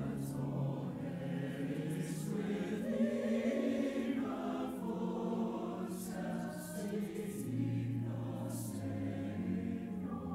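Mixed church choir of men's and women's voices singing in parts, with long held chords that change every second or two.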